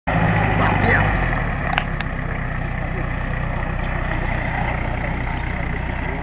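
Jeep Cherokee XJ engine running, a little louder for the first second and then settling to a steady idle, with two sharp clicks about two seconds in.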